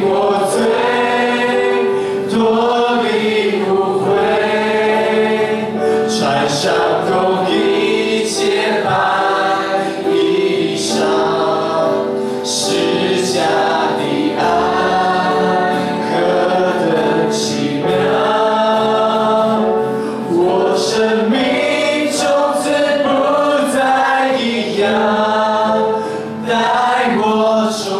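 A congregation sings a Mandarin worship song together, led by a male worship leader on a microphone, over instrumental accompaniment. The singing runs in continuous phrases with long held notes.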